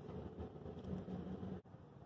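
Faint steady outdoor background rumble with a low hum, which drops away suddenly about one and a half seconds in.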